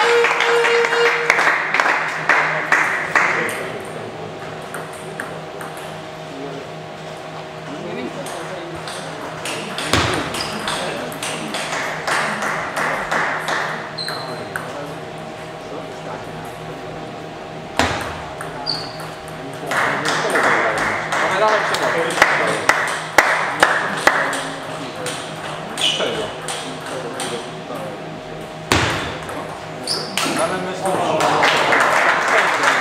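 Table tennis ball clicking off bats and table during rallies, the hits coming in quick runs, with voices in the hall in between.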